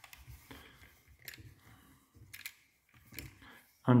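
Handling noise from a No. 2 Folding Pocket Brownie camera: about five small, sharp clicks and taps spread over a few seconds as its body and metal fittings are handled.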